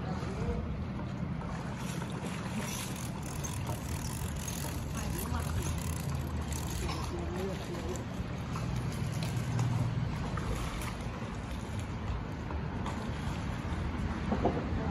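Steady low rumble with wind on the microphone, and a scatter of brief crackles between about three and seven seconds in.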